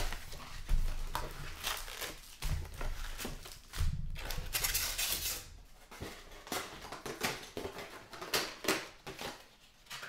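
A cardboard trading-card box is opened by hand and its card packs are pulled out and set down on a rubber mat. There are scattered taps, bumps and rustling, with a longer stretch of rustling and crinkling about four to five seconds in.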